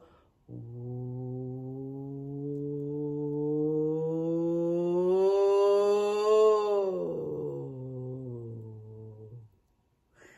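A woman's voice doing a vocal siren: one long held note that starts low, slides up while growing louder to a peak about six and a half seconds in, then slides back down and fades out shortly before the end. It is a warm-up glide tracing the sphere opening and closing, and the voice comes down before the sphere has finished closing.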